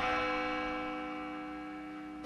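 A single deep bell stroke that starts suddenly, then rings on with several steady tones and slowly fades.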